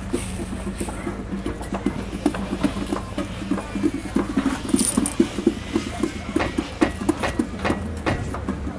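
A metal bucket being tapped with the hands like a drum, in a quick rhythm of about four strikes a second, over a steady low hum.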